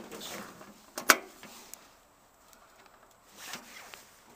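Rustling of heavy winter clothing and handling noises as a person settles on a garden tractor and reaches for its controls, with one sharp knock about a second in. The engine is not running.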